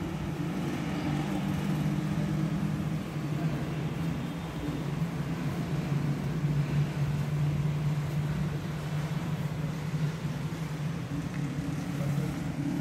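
Steady low mechanical hum with no breaks, with faint noise above it.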